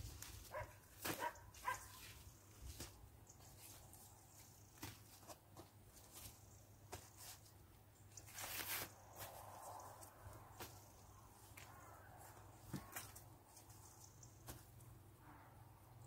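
Near silence with faint, scattered clicks and knocks of small plastic plant pots being set down on weed membrane and a plastic crate being handled, and a brief rustle about nine seconds in.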